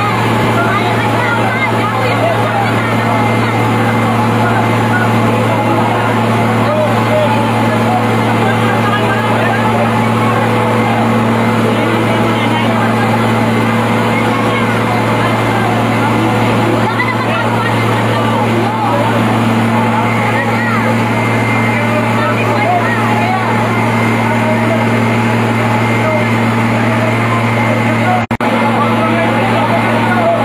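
Fire truck engine running at a steady speed to drive its water pump, a constant low hum, under the shouting and chatter of many people.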